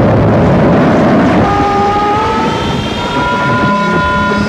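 Harsh noise music: a dense wall of distorted noise, with several steady high tones joining it about a second and a half in.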